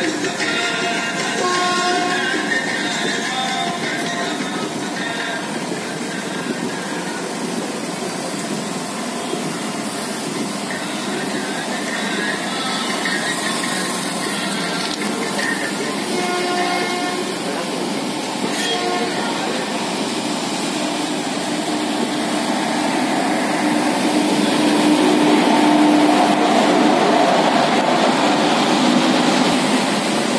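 Running noise of a moving Indian Railways passenger train heard from on board: a steady rumble and rattle that grows louder over the last few seconds.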